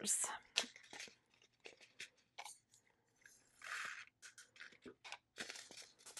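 Handling of small plastic drill bags and containers: irregular crinkling and crackling with short clicks, and two longer rustles in the second half.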